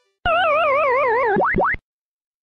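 A loud electronic sound effect: a warbling tone that wavers rapidly up and down for about a second, then two quick rising swoops, cut off abruptly.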